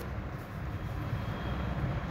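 A steady low rumble of background noise with no distinct event in it.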